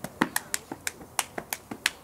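A stepper's hands beating out a fast, even rhythm of sharp claps and slaps, about six strikes a second, some with a heavier thud under them.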